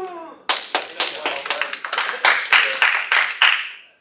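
Audience applauding: many hands clapping, starting about half a second in and dying away just before the end.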